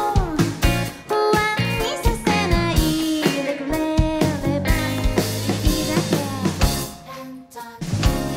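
Live band playing city pop with a shamisen. A drum kit drives the beat over bass and keyboards, and the level drops briefly near the end.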